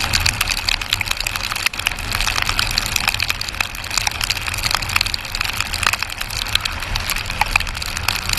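Rain striking the camera and its microphone on a moving motorcycle: a dense, continuous crackle of sharp clicks over a low rumble of wind and engine.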